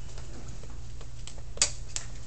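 Whiteboard eraser wiping across a whiteboard over a steady low hum, with one sharp knock about one and a half seconds in.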